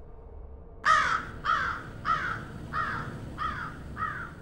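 A crow cawing, a run of about six harsh caws a little under two a second, each fainter than the last.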